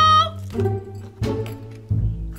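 Electronic tune from a toddler's battery-powered toy guitar: a high held note that cuts off about a quarter-second in, then a couple of lower notes over a steady bass.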